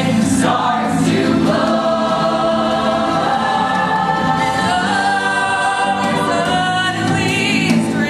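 A mixed choir of young voices singing in harmony, holding long sustained chords; the chord moves to new notes about halfway through.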